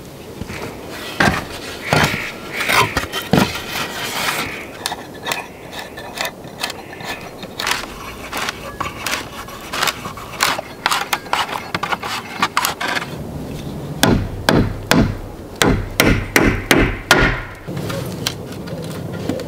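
Split wooden shingles knocking and clattering against one another as they are handled, with a run of heavier wooden knocks, two or three a second, near the end.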